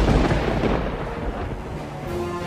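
A rumble of thunder, used as a sound effect between segments. It hits loudest at the start and dies away over two seconds.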